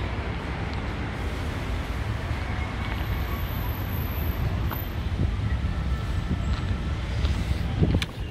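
Steady low rumble of road traffic from a nearby street, mixed with wind noise on the microphone.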